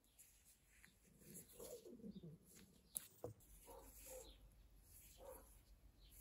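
Near silence with faint birds in the background: a pigeon or dove cooing and small birds chirping. There are a couple of faint clicks about three seconds in.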